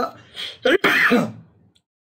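A man's voice speaking Hindi in short bursts, with a sharp click about a second in; his speech sounds rough, close to throat-clearing.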